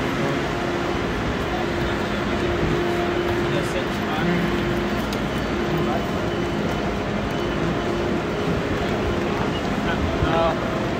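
Busy railway platform beside a standing ICE high-speed train: a steady machine hum that fades in and out, over a constant wash of background voices and station noise.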